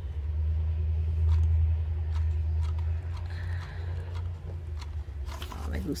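A steady low hum with scattered faint clicks and taps.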